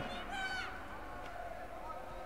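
Faint arena background from the judo match: a distant voice calls out briefly about half a second in, over a low steady hum.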